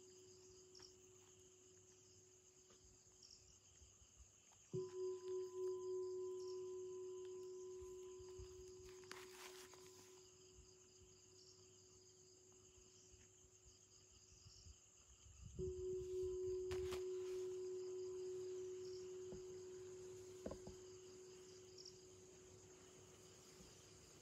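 A bell struck twice, about ten seconds apart. Each stroke rings out in one long, wavering tone that fades slowly. Crickets chirr faintly and steadily underneath.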